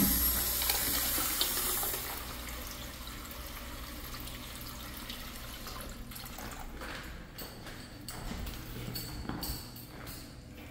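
A wall urinal flushing through a chrome flushometer valve. Water rushes loudly and tapers off over about two seconds, then keeps running more quietly.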